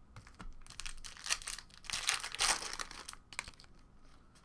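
A foil trading-card pack crinkling and tearing open, loudest about halfway through, among light clicks and rustles as the cards are slid out and handled.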